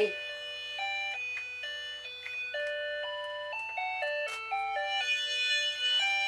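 Tinny electronic jingle from a musical toy: single beeping notes stepping up and down in a simple tune, one note at a time.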